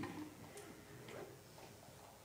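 A few faint, irregular clicks over quiet room tone.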